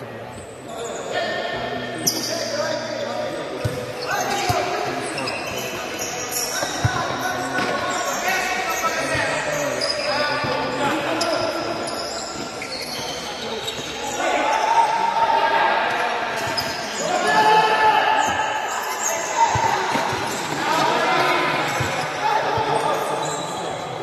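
Futsal match on an indoor court: the ball being kicked and bouncing on the hard floor in a few sharp knocks, amid players calling out, all echoing in a large hall.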